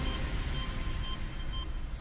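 Tail of a news programme's theme music: the drum beat has stopped and a sustained low rumble and wash with faint held tones carries on.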